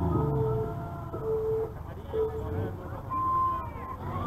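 Three electronic beeps at one low pitch, about a second apart, followed by a single higher beep about three seconds in, over low background noise.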